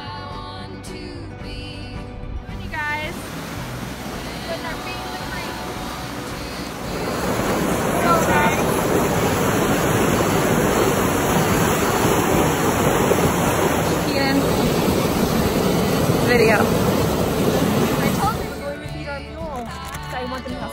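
Loud, steady rushing of a fast muddy stream over rocks, starting about seven seconds in and cutting off shortly before the end. Before it comes background music with a voice, which runs on faintly under the water.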